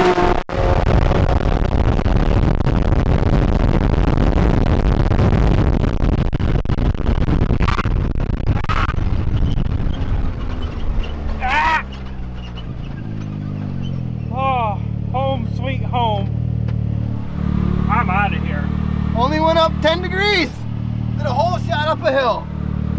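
Can-Am Maverick X3 turbo side-by-side driven hard, its turbocharged engine and CVT running loud under heavy throttle with wind and gravel noise for about the first eleven seconds. Then the throttle comes off, the engine note falls and settles to a lower, steady running sound.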